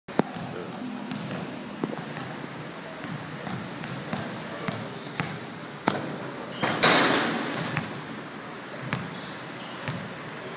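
Basketball bouncing on a court floor, a handful of sharp irregular thuds, with voices around it. About seven seconds in comes a loud burst of noise that fades over about a second.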